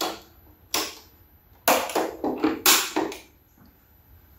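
About half a dozen sharp mechanical clacks over three seconds, the loudest near the middle, as switches or breakers are flipped on to power up MidNite Classic solar charge controllers.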